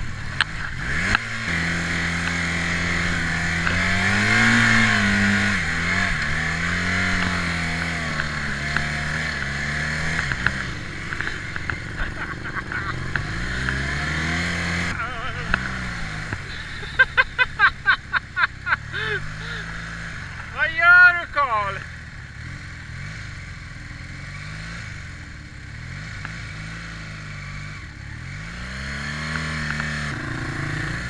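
A motorcycle engine running as the bike rides over sand, its pitch rising and falling with the throttle, with wind rushing over the microphone. About halfway through the wind drops away and the engine settles to a lower, steadier running as the bike slows. Around then come a rapid string of short vocal bursts and a loud rising-and-falling call.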